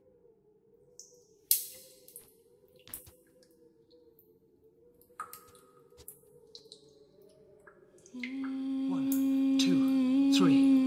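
Eerie film sound design: a faint wavering drone with a few scattered sharp clicks, the loudest about a second and a half in, then a loud sustained low tone with sweeping higher glides swelling in about eight seconds in.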